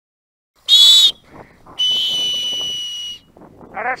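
Dog-training whistle blown as commands to a gundog: a short loud blast a little under a second in, then a longer steady blast of over a second. Faint rustling comes between the blasts.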